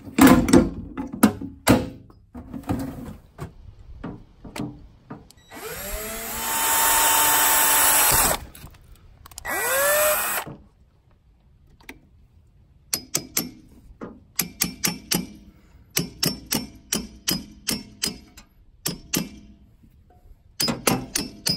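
Hand tools clattering in a metal tool drawer, then a power drill running in two bursts, its pitch rising and falling, as it bores through the steel canister of a spin-on oil filter. In the last third, a run of sharp, ringing hammer taps, two to three a second, driving a screwdriver through the oil filter.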